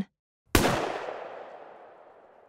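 A single pistol shot about half a second in, breaking silence and ringing out with a long echoing tail that fades away.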